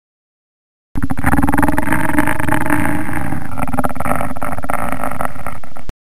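A loud, rough growl sound effect for a monster, starting abruptly about a second in and cutting off abruptly just before the end.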